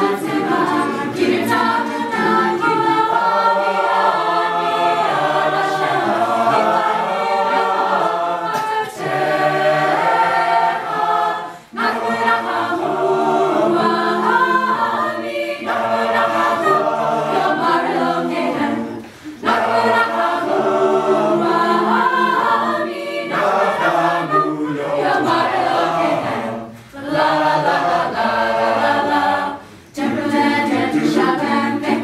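A cappella group of mixed male and female voices singing together without instruments, with brief breaks between phrases about 12, 19 and 27 seconds in.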